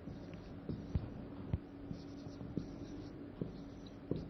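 Marker pen writing on a whiteboard: a few short taps and strokes, about five in all, spread unevenly over a steady low hum.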